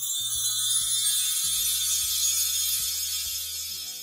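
Short music sting: a bright, shimmering high sparkle held over a few low notes that step in pitch, fading slightly toward the end.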